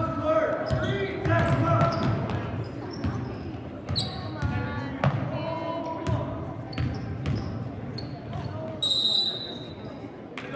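A basketball dribbled on a hardwood gym floor, echoing in the hall amid spectators' voices. A referee's whistle blows briefly near the end.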